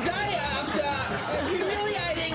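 Indistinct chatter of voices.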